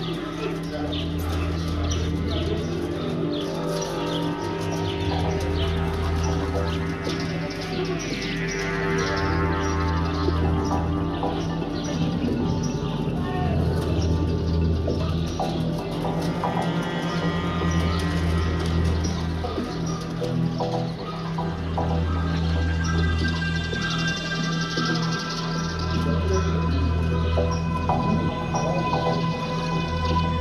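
Progressive house DJ mix: sustained synth pads over a deep bass note that swells in and out every three to four seconds, with a sweep falling in pitch about eight seconds in.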